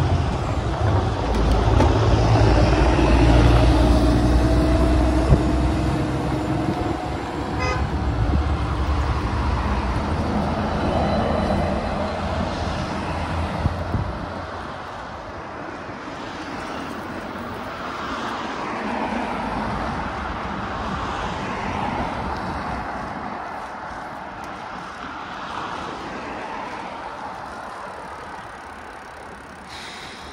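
Motor traffic passing on a busy multi-lane road, heard from a moving bicycle. A heavy low rumble fills the first half and drops away sharply about halfway through, leaving lighter traffic noise that fades toward the end.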